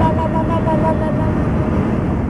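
Road and engine noise inside a car cruising on a highway, a steady low rumble. A thin tone with two pitches at once sounds over it for just over a second at the start, then fades out.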